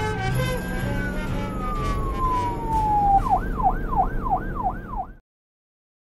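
Emergency-vehicle siren: one slow falling wail, then a fast up-and-down warble about three times a second, cutting off suddenly near the end.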